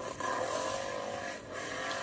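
ATV (quad bike) engine revving as it churns through deep mud, its pitch rising and falling.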